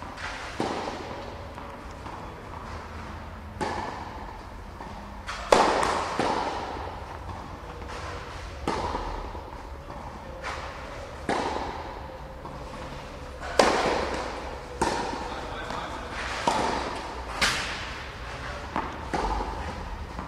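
Tennis ball bouncing on a clay court and struck by racket strings: about a dozen sharp knocks at irregular intervals, each with a short echo from a large indoor hall.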